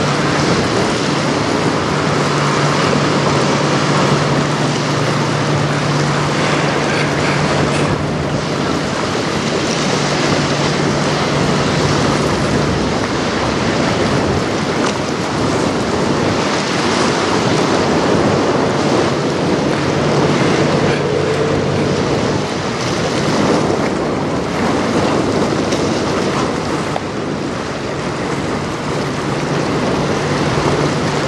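A steady rush of wind on the microphone and of river water, under a low, steady hum that fades and returns: the engine of the passing CSL Niagara, a 222 m bulk carrier.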